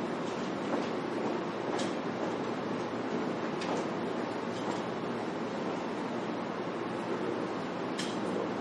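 Steady background noise that runs unchanged throughout, with a few faint light ticks about two seconds in and again near the middle.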